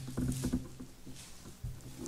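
Soft irregular knocks and handling noises at a wooden pulpit as the preacher turns to a new passage in his Bible, over a low steady hum, with a louder thump near the end.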